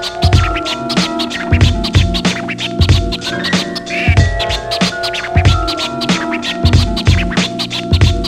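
Hip hop beat: regular kick-drum hits under held pitched tones, with turntable scratching and short rising glides about four seconds in and again just after.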